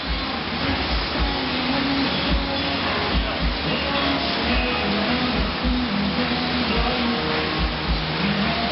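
Airdyne fan bike being pedalled hard in a sprint, its spoked fan giving a steady rushing whoosh, under background music with a deep beat.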